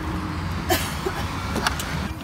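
Tesla charging connector being unplugged from the Model X's charge port: a sharp click about two-thirds of a second in, then a couple more clicks near the end. A steady low rumble of wind on the microphone runs underneath.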